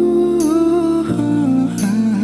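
Male voice singing a slow Korean pop ballad line: a long held note with slight vibrato, stepping down in pitch in the second half, over soft sustained accompaniment.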